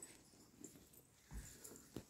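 Near silence: quiet room tone, with one faint, short low thump a little past the middle.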